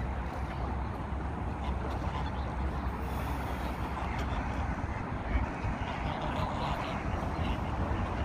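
Steady outdoor background noise: a continuous low rumble under an even hiss, with no distinct calls or knocks.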